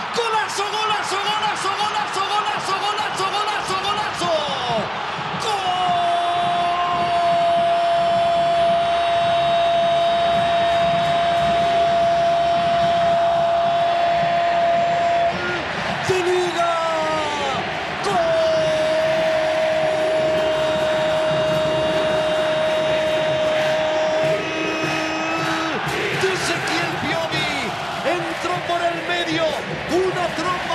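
A football commentator's drawn-out goal cry: after a burst of excited calling, one long held note of about ten seconds, a short break with falling cries, then a second held note of about six seconds, followed by more excited talk.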